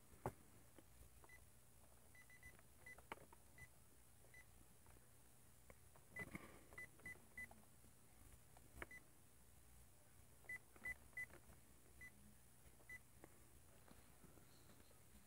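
Faint, short keypad beeps from a handheld radio scanner as its buttons are pressed, a dozen or more at an uneven pace, some in quick runs, with a few soft button clicks among them.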